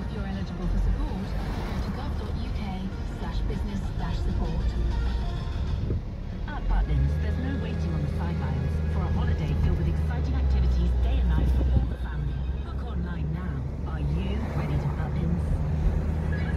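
A song with singing playing from the car radio inside a moving car, over steady engine and road noise.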